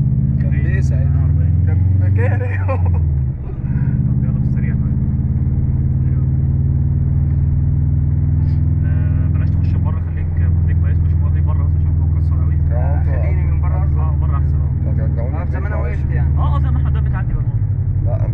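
Subaru Impreza WRX STi's turbocharged flat-four engine running under way, heard from inside the cabin. The steady engine note drops and shifts pitch about three seconds in, and dips briefly around ten seconds in.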